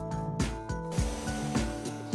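Background music with a steady beat and sustained, held notes.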